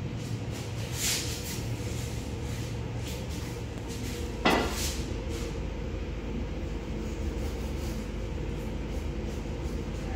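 Knife cutting through a baked puff-pastry crust on a plastic cutting board: a few scattered crunches and knocks, the loudest about four and a half seconds in, over a steady low hum.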